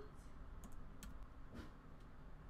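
A few faint, separate computer keyboard key clicks.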